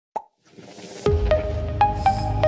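Electronic intro music for a logo sting. A faint click and a rising whoosh swell into a deep bass hit about a second in, followed by a sustained bass and a few short ringing notes.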